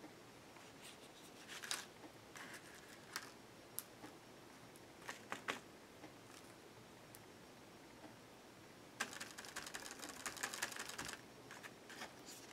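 Faint, scattered taps and light rustles of a makeup sponge dabbing paint through a stencil onto a canvas board, with a quick run of rapid dabs about nine seconds in that lasts a couple of seconds.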